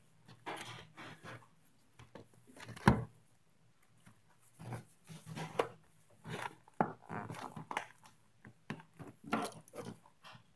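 Shiny trading-card pack wrapper crinkling and rustling in the hands and against a wooden table in irregular short bursts, with one sharper knock about three seconds in.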